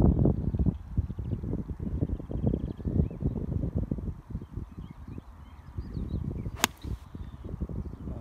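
Wind buffeting the microphone, then near the end a single sharp click as an iron strikes a golf ball off the tee.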